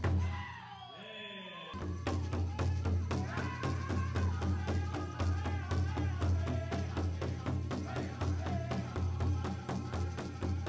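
Powwow drum group: a high solo vocal line falls away, then from about two seconds in the big drum beats a steady rhythm while the singers carry the song in high voices.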